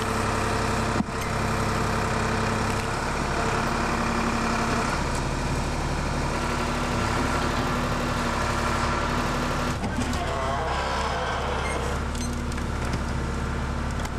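Backhoe engine running steadily while the bucket digs out a tree stump, its pitch shifting a few times as the hydraulics take load.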